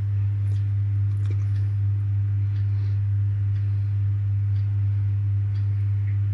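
A steady low hum, with faint scattered ticks from a tray of chicken and potatoes in tomato sauce heating on the stove as it comes up to a simmer.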